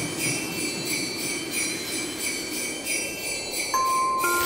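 Sleigh bells jingling in a steady rhythm, about three to four shakes a second, over a low rumbling noise. A single chime note comes in near the end.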